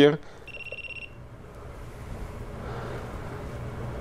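Autel MaxiTPMS TS408 handheld TPMS tool giving one high electronic beep, a little over half a second long, about half a second in, as it finishes programming the new tire pressure sensor.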